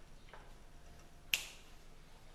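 Quiet room tone with a single sharp click about a second and a half in, and a much fainter click near the start.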